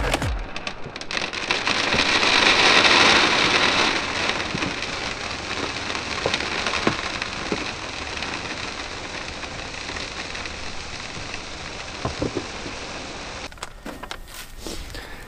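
Lawn-thickener granules (grass seed mixed with fertilizer pellets) poured from a bag into the plastic hopper of a Scotts Elite broadcast spreader. The falling grains make a steady hiss, loudest about two to four seconds in, then thinning out.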